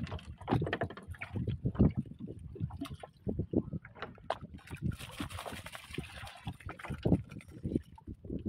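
A woven bamboo fish trap being handled on a wooden boat: a run of irregular knocks and rattles as the bamboo slats bump against the deck and hull. Water splashes for a second or so just past the midpoint.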